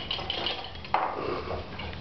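Several small glass beakers of clear solution being poured at once into glass conical flasks, liquid splashing and glass clinking against glass, with a sharper clink about a second in.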